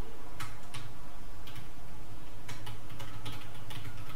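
Keystrokes on a computer keyboard as a word is typed, a sparse, irregular series of clicks. A steady low hum runs beneath.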